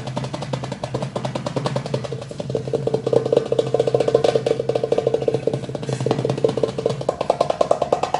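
Darbuka (goblet drum) played by hand in a fast rhythm of rapid, rolling finger strokes, which grow louder a few seconds in.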